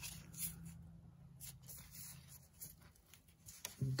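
Faint rustles and a few light clicks of a gloved hand handling wiring in an engine bay, over a faint low hum that fades out about halfway through.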